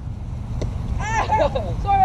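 High-pitched shouts from boys during a small-sided football game, a short burst of calls about a second in and another falling call near the end, over a steady low rumble of wind on the microphone. A faint knock comes about half a second in.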